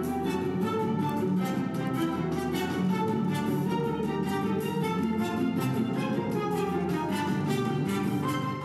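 Instrumental music playing from a CD on a Bose Wave Music System IV, filling the room steadily with no speech over it.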